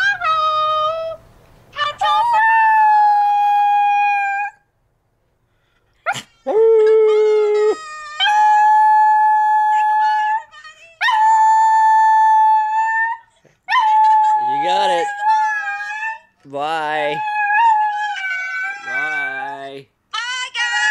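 Chihuahua howling: a series of long, held howls, each two to three seconds, with short pauses between. In the second half a lower, wavering voice howls along with it.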